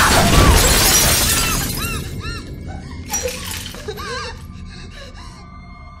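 Glass of a mirror shattering in one loud crash as a woman screams, the crash dying away over the first couple of seconds into a quieter eerie horror-film score.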